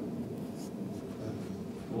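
Room tone in a pause between speech: a steady low hum with a faint scratchy rustle about half a second in.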